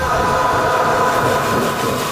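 Loud, harsh screeching noise with a few steady high tones held throughout: a horror-trailer sound-effect swell.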